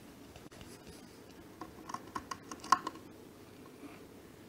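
A pet rat's claws scratching and clicking on a wooden tray: a scatter of faint, short clicks in the middle, with one sharper click near the end.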